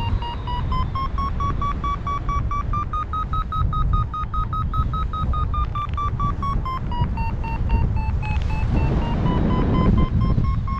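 Paragliding variometer sounding its climb tone: a fast train of short beeps, about six a second, that rises in pitch, dips briefly near the end and comes back up, the sign that the glider is climbing in a thermal. Wind rumbles on the microphone underneath.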